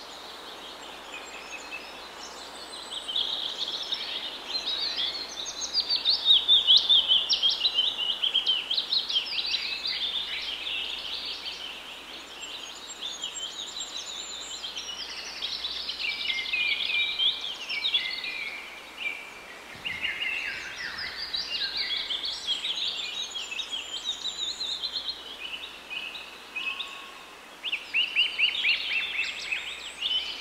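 Birds chirping and singing in many quick, overlapping calls over a steady background hiss.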